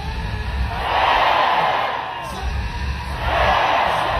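A huge crowd crying out and praying aloud all at once, with no single voice standing out, swelling loud twice.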